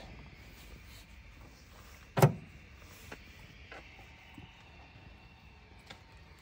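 Quiet background with a few faint small clicks, and one short spoken 'a' about two seconds in.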